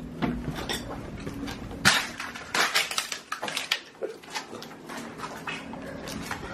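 Footsteps crunching and clinking over broken glass and debris on a hard floor: a run of irregular sharp crunches, loudest around two to three seconds in.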